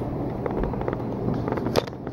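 Camera handling noise and light knocks as the person holding the camera gets up and moves across a wooden-floored room, over a steady low hum. A sharper click comes near the end.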